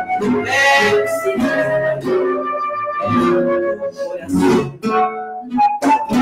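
Live acoustic tango played by a flute and two acoustic guitars, with the guitars plucking and strumming under held flute melody notes.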